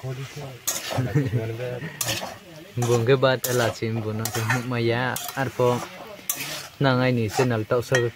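A metal spatula stirring chicken curry in a metal wok: repeated scrapes and clanks against the pan, some with a pitched, squeal-like scraping tone, over a light sizzle of frying.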